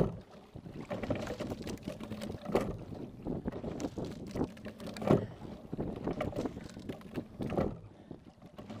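Single sculling boat being rowed: oars and sliding seat working in a steady stroke over water rushing past the hull, with a louder knock and splash about every two and a half seconds, one per stroke. The sharpest knock comes right at the start.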